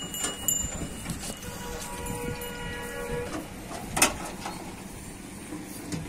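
A horn sounds one steady, unchanging note for about two seconds, and a single sharp knock follows about four seconds in.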